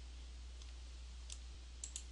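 Quiet pause with a steady low electrical hum and a few faint clicks, two of them close together near the end.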